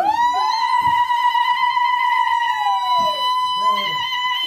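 Women ululating (zgharit): a long, high, steady trilled call held for about four seconds, with a second voice gliding down and dropping out about three seconds in.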